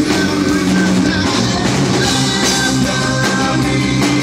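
Loud live metal band playing: distorted electric guitars over a Mapex drum kit, dense and unbroken.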